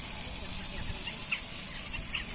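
Outdoor ambience: a steady low rumble with a few faint, short, high chirps.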